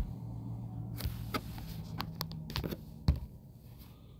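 Several sharp clicks and taps over a low steady hum, the loudest right at the start and about three seconds in.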